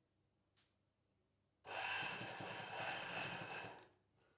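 Domestic sewing machine running in a short burst of stitching, about two seconds long, starting a little over a second and a half in and stopping just before the end, as lace trim is sewn along a blouse neckline.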